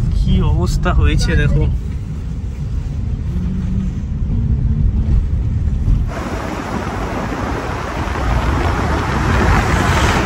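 Car driving on a road, heard from inside: a steady low engine and tyre rumble, joined about six seconds in by a sudden louder rushing hiss of wind and road noise.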